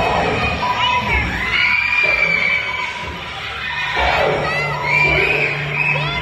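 A crowd of children shouting and shrieking, with many short high screams that rise and fall in pitch.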